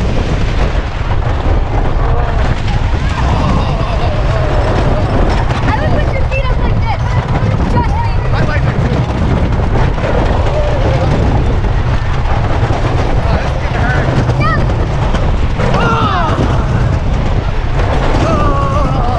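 Wooden roller coaster train running fast on its track: a loud, steady rush of wind on the microphone and track rumble, with riders screaming now and then, loudest a couple of seconds before the end.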